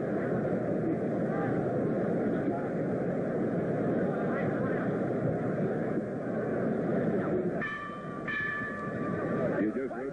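Arena crowd chatter, steady and dense, between boxing rounds. About three-quarters of the way through, the ring bell rings twice in quick succession to start round 12.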